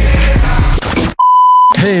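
Hip-hop music with rapping from a live performance, cut off abruptly a little over a second in by a loud, steady, single-pitch electronic bleep about half a second long.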